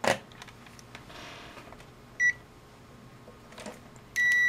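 A sharp click at the start, then a short high electronic beep from the Kasuntest ZT102 digital multimeter about two seconds in, with faint clicks near the end, as the meter is handled and switched between test functions.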